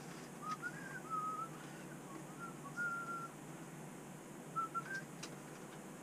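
A person softly whistling a few short, wavering notes of a tune, with a few faint clicks.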